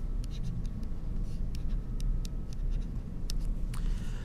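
A stylus writing a short note on a tablet screen: a scatter of light ticks and scratches from the pen strokes, over a low steady hum.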